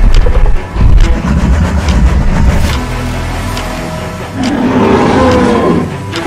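Dramatic film-style music with heavy low rumbles. From about four and a half seconds in, a deep growl builds: a T-rex sound effect.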